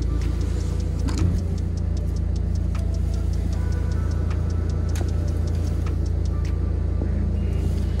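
Car engine idling, heard through the open driver's window, a steady low rumble. Background music with a fast ticking beat plays over it.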